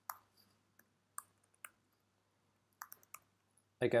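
A few sparse computer keyboard keystrokes: single sharp clicks with gaps of up to a second between them.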